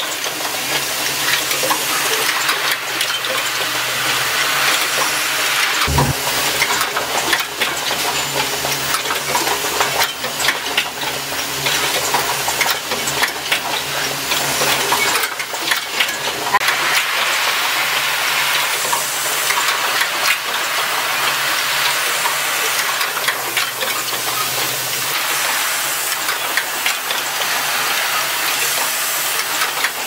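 Micro switch automatic assembly machine running: a steady hiss with dense, rapid clicking of its mechanisms. A single low thump about six seconds in.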